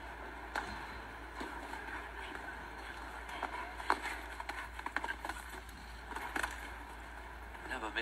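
Indoor show-jumping arena ambience: a steady background of indistinct crowd voices, with a few scattered short knocks.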